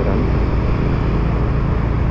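A motorcycle running steadily under way, with the engine and road and wind noise blended into an even low drone.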